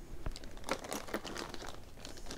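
Clear plastic zip-top bag crinkling as it is handled, a string of small irregular crackles.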